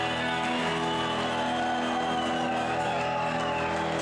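A live rock band with electric guitars holding out long, sustained notes that ring on, near the end of a song.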